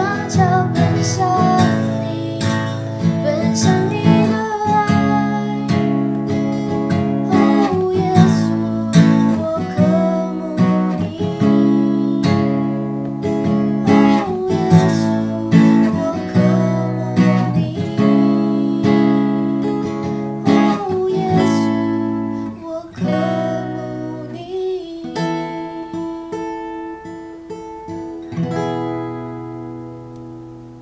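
Acoustic guitar with a capo strummed in slow chords as the closing instrumental of a worship song. The strumming thins out over the last several seconds, and a final chord rings away.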